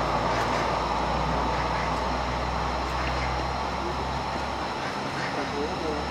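Steady rush of a shallow stream flowing over stones, with faint voices of people in the background.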